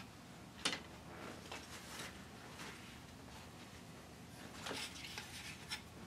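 Light handling noise of a small wooden model boat hull being worked by hand on a bench: a sharp click about two-thirds of a second in, a few faint scrapes, then a quick cluster of clicks and taps near the end.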